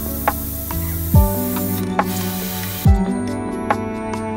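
Airbrush spraying paint: a steady hiss that breaks off briefly a little under two seconds in, then stops about three seconds in. Background music with a drum beat plays throughout.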